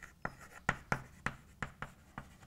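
Chalk writing on a blackboard: a quick, irregular series of sharp taps and short strokes as letters are formed.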